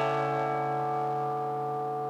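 Background music: one chord struck right at the start and left to ring, fading slowly.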